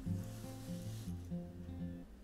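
Quiet acoustic guitar background music, low notes changing every half second or so.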